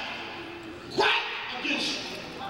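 A preacher's voice over a microphone in short, hoarse shouted bursts rather than plain speech: one about a second in and a shorter one near the end.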